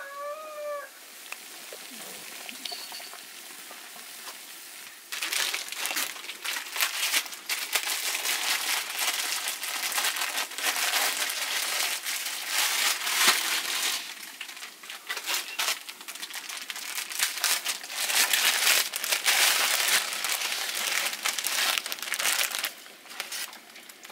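Plastic wrapper of dried noodles crinkling as it is handled and opened, a dense crackle that starts about five seconds in and goes on with short pauses.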